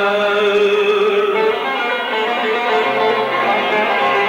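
Turkish aşık folk music played on the bağlama (saz), a long-necked plucked lute, with long held notes.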